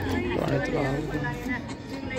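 Indistinct chatter of visitors in a crowded hall, with music playing in the background.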